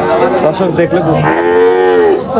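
A young bull mooing, with one long drawn-out call in the second half that rises slightly and then eases off.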